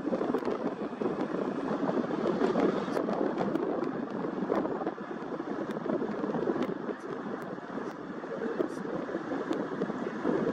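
A huge flock of snow geese calling all at once as the birds take off and fly: a dense, continuous clamour of overlapping calls that eases a little about halfway through.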